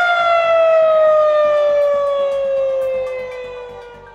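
Outdoor warning siren with a single rotating horn, sounding one long tone that glides slowly and steadily down in pitch and fades away toward the end.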